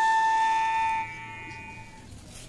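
Background music: a flute holding one long steady note, which fades sharply about a second in.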